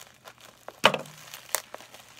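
Bubble wrap packaging crinkling as it is handled, with two sharp crackles, the louder one about a second in.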